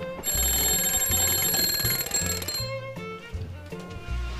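An alarm bell rings rapidly and loudly for about two seconds, then stops, over background music with a steady bass line.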